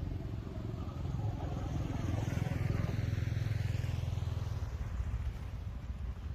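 A motor vehicle passing by: its engine rumble grows louder to a peak about halfway through, then fades.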